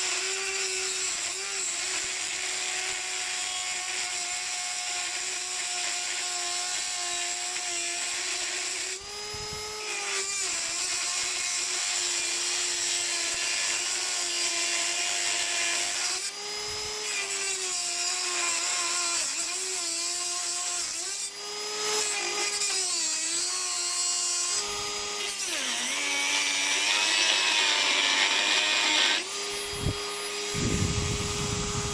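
Dremel 4000 rotary tool with a cut-off disc cutting through a metal lever blank: a steady high whine whose pitch sags and recovers as the disc is pressed into the cut, with a few brief breaks. It grows louder and rougher a few seconds before the end, then stops.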